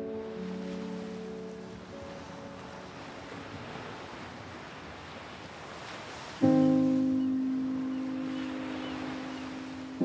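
Soundtrack music fades out under a rushing, surf-like wash of noise; about six and a half seconds in, a loud, deep sustained chord strikes and slowly fades.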